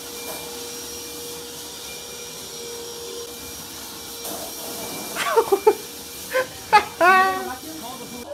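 A wet/dry shop vacuum running steadily with a constant whine, over a steady hiss of water spraying from under a sink. Voices come in about five seconds in.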